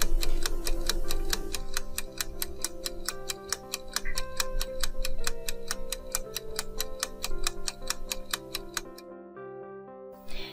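Ticking-clock sound effect for a countdown timer: fast, even ticks, several a second, over soft background music. The ticking stops about nine seconds in.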